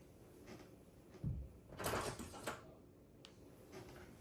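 Faint handling noises of someone working by hand: a soft thump, a brief scraping rustle about two seconds in, and a light click near the end.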